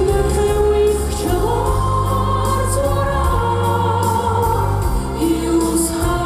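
Live music: a soprano singing long, held notes into a microphone, backed by an orchestra and choir.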